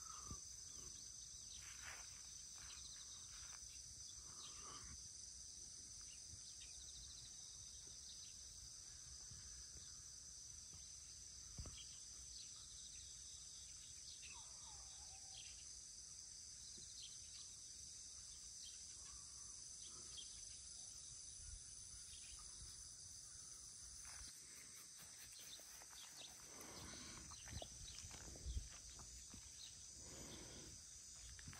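Faint, steady chorus of crickets, a continuous high-pitched trill, with a few soft knocks near the end.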